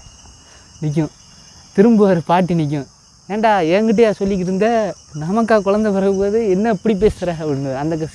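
A man talking in lively bursts with short pauses, his pitch rising and falling, over a steady high-pitched insect drone.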